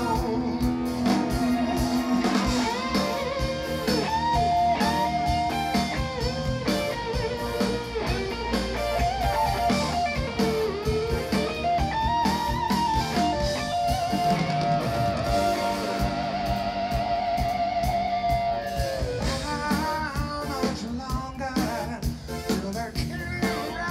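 Live pop-rock band playing an electric guitar solo over bass and drums. The lead line bends and slides between notes and holds one long wavering note in the second half. The lead vocal comes back in near the end.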